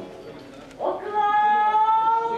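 A kagura performer's chanting voice: after a short rising onset about a second in, one long held sung note, rising slightly in pitch, over the fading ring of the drum and cymbal strikes just before.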